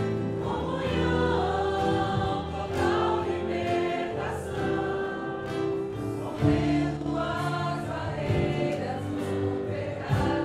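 A church congregation singing a Portuguese-language hymn together, accompanied by a small live band including acoustic guitar and keyboard.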